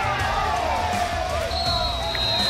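Field hockey umpire's whistle: one long steady blast that starts about one and a half seconds in, over voices on the pitch and the sideline.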